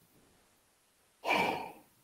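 A person's short breathy sigh a little over a second in, fading over about half a second: the sigh of someone who has lost their train of thought mid-sentence.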